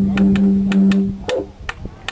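Didgeridoo soundtrack music: a steady low drone over a beat of sharp clicks, about four a second. The drone breaks off a little over a second in, leaving a few scattered clicks.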